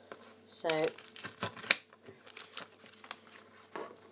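Knife cutting through a crisp chocolate-coated wafer ball on a stone worktop: a run of sharp cracks and crunches, loudest about a second and a half in, then a few lighter clicks.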